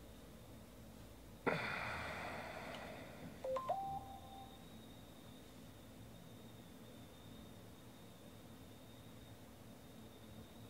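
A sudden hissy burst about one and a half seconds in that fades away over about two seconds, followed by a short electronic beep that steps up in pitch. A low hum and a faint thin whine lie underneath.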